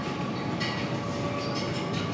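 Steady rumbling background noise of a large supermarket aisle, with a faint steady tone and no distinct knocks or clatter.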